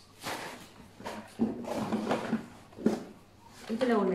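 Packs of firecrackers being handled and rummaged in a cardboard box: scattered knocks and rustles, with some low talk between them.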